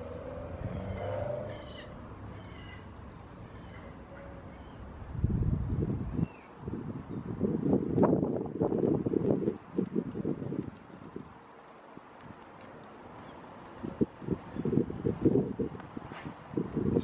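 Wind buffeting the microphone in irregular gusts, a low rumble that comes and goes, loudest from about five to ten seconds in and again near the end. Faint short high chirps sound in the first few seconds.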